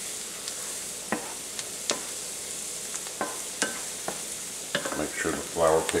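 Diced onion, celery and bell pepper sizzling steadily with flour in butter and sausage drippings in a pot on the stove, the flour cooking in the fat. A spoon knocks and scrapes against the pot now and then as it is stirred.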